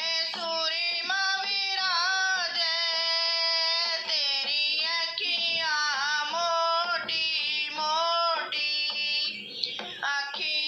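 A woman singing a Hindi Shri Shyam bhajan unaccompanied, in phrases of long held notes that slide between pitches, with short breaths between phrases.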